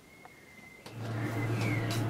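A faint high steady tone, then about a second in a machine's steady low hum with fan-like noise above it starts up.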